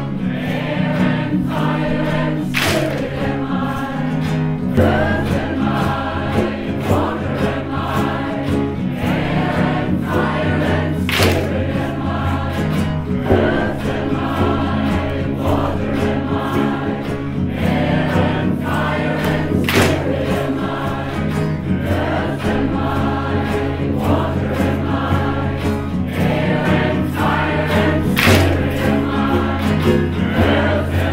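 A group of mixed voices singing a repetitive Native American chant in unison, accompanied by acoustic guitar and frame drum. A sharp loud clap comes about every eight seconds, four times in all.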